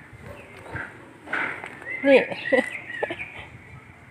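A bird calling in the background: one wavering high call, about a second long, starting about two seconds in, after a brief rustling burst.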